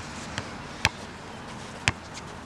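A basketball dribbled on an asphalt court: two sharp bounces about a second apart, with a fainter tap before the first.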